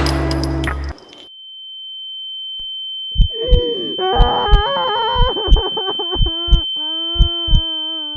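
Recorded music: the full band cuts off about a second in, leaving a steady high-pitched tone. About three seconds in, a gliding melodic line over a kick-drum beat comes in, building toward the next section of the song.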